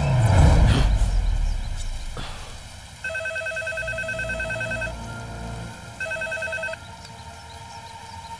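Tense film music fades out over the first two seconds or so. Then a telephone rings with a fast electronic trill: one ring of about two seconds, a short pause, and a second ring cut short after under a second.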